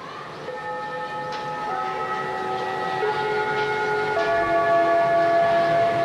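Live band's electric guitars holding long sustained notes, moving to new pitches about every second and swelling steadily louder.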